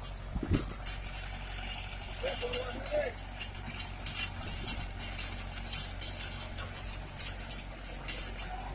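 Mahindra Yuvo tractor engine running steadily while its rear rotary tiller churns grassy ground, with many short sharp clicks and crackles over the hum. A brief call from a person's voice comes about two seconds in.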